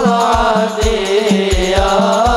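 Hadroh ensemble playing: rebana frame drums and a deep drum keep a steady, repeating beat under a wavering sung melody.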